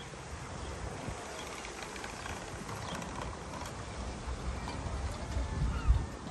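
Outdoor garden ambience: a steady low rumble, growing louder near the end, with faint distant voices.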